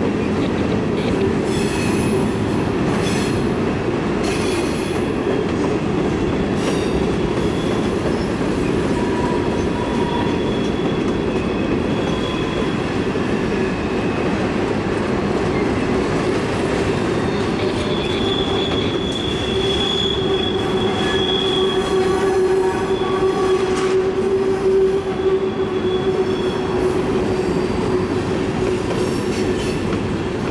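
Freight train cars rolling past on a curve: a steady rumble of steel wheels on rail, with high wheel squeal that comes and goes and is loudest past the middle.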